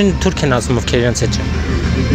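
Street interview conversation in Armenian, a man and a woman talking in turn into a handheld microphone, over a steady low rumble of city traffic.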